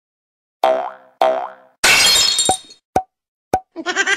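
Cartoon sound effects for a logo intro: two springy boings, then a loud crash like glass shattering, three short pops, and a busy rattling flourish near the end.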